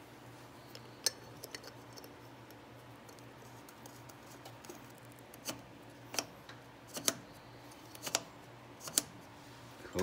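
Small metal clicks and taps as a steel selector handle is fitted and fastened onto a Husky locking hub's dial: about ten sharp clicks, spread irregularly, some in quick pairs, over a faint steady hum.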